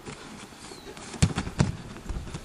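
Two sharp thumps about a third of a second apart as an aikido partner is taken down onto the outdoor training mat in a kick technique.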